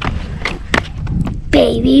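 Low rumble of wind on the microphone with four or five sharp knocks in the first second or so, then a boy says "one" and laughs near the end.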